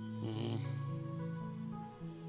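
Sustained keyboard chords of soft background worship music, with a short rough grunting vocal noise from a person about half a second in.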